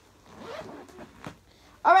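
A backpack zipper being pulled open in one short rasping run of about a second, followed by a light click.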